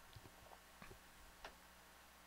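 Near silence, with a few faint, short clicks in the first second and a half.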